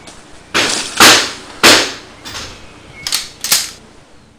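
A quick series of about six sharp gunshots, likely a toy or prop gun. The loudest comes about a second in, and the last few are weaker.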